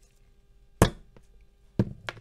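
Small cast gold bar knocking against a paper-covered benchtop as it is handled and set down: a sharp knock a little under a second in, a faint tick, then another knock near the end.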